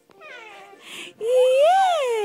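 Four-month-old baby cooing: soft murmurs, then a long high-pitched vocal sound a little past halfway that rises and then falls in pitch.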